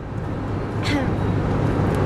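Road and engine noise inside a moving car's cabin at highway speed, a steady low rumble, with a brief voice sound about a second in.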